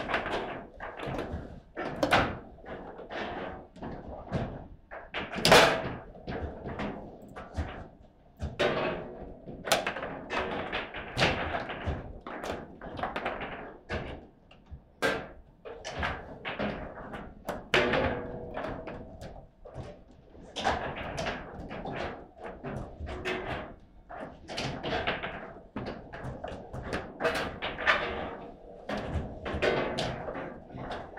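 Table football in play: irregular sharp clacks and thunks of the ball being struck by the rod-mounted figures and banging off the table walls, with the rods knocking against their stops. The loudest strike comes about five seconds in.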